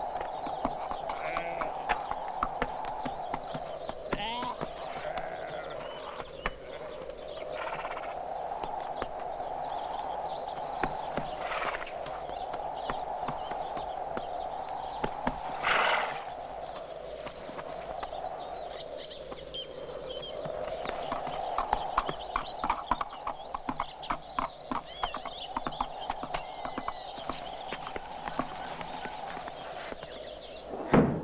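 Horse hoofbeats on a forest path, denser and quicker in the last third, with a few whinnies, over a steady drone that slowly rises and falls in pitch.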